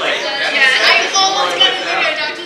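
Several young people talking over one another and laughing: unscripted group chatter.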